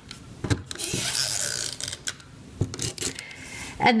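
A Stampin' Up! Snail adhesive tape runner being rolled across cardstock, its ratcheting mechanism rasping as it lays down a strip of adhesive, with a few sharp clicks.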